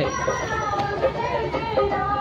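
A voice over public-address horn loudspeakers, with long drawn-out notes, against the voices of a crowd and children.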